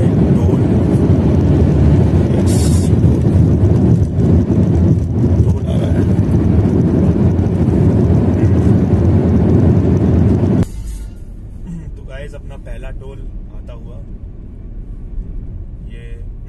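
Road and engine rumble inside a Hyundai i20's cabin at highway speed, a loud, steady low roar. About eleven seconds in it drops abruptly to a much quieter level.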